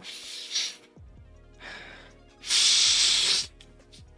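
A person sniffing an unlit cigar held under the nose: two short sniffs, then one long, loud inhale through the nose about two and a half seconds in. Soft background music plays underneath.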